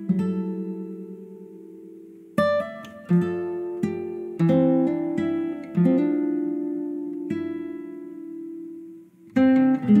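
Background music: a plucked string instrument, guitar-like, playing notes and chords that each ring out and fade, with a brief gap about nine seconds in.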